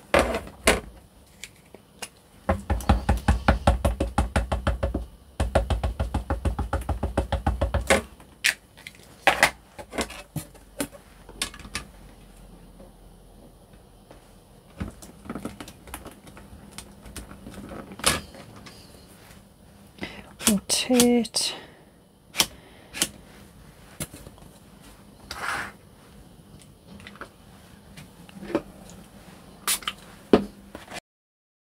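A rubber or clear stamp being inked by quick tapping against an ink pad, in two runs of a few seconds each. After that come scattered single clicks and knocks as the acrylic lid of a stamping platform is handled and set down.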